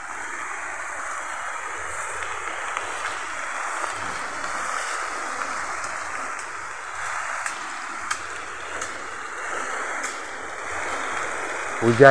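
Steady hiss of rain falling on bamboo leaves and undergrowth, with a few faint sharp ticks.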